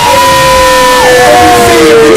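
Very loud live hip hop music with a voice holding one long note that sags slightly in pitch near the end, over a dense, noisy background.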